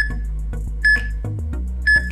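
Workout interval timer sounding its countdown: three short, high electronic beeps about a second apart, over background music with a steady bass line.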